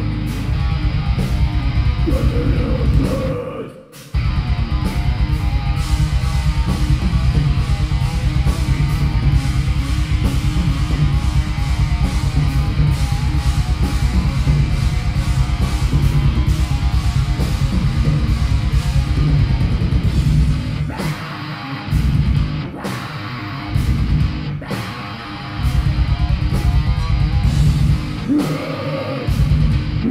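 Live heavy metal band: distorted electric guitars, bass guitar and drum kit playing loudly. The band stops dead for a moment about four seconds in and crashes back in; later there is a run of stop-start riffs with short gaps between them.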